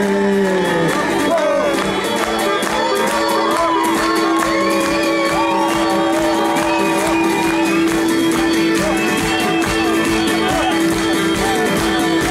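Live Greek folk band playing at full volume: a strummed laouto over a driving drum beat, one long held note under a wavering melody line. Shouts from the audience are mixed in.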